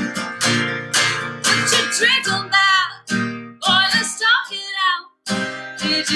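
A woman singing a country song to her own strummed acoustic guitar. The sound cuts out for an instant a little after five seconds in.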